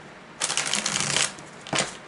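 A deck of tarot cards being shuffled by hand: a rapid run of flicking card edges begins about half a second in and lasts nearly a second, then a short second flutter comes near the end.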